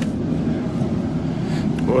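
Steady low rumble of supermarket background noise in a refrigerated produce aisle, with no distinct events.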